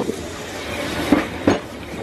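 Narrow-gauge steam train carriage rolling along: a steady rush of running noise with two sharp knocks a little after a second in.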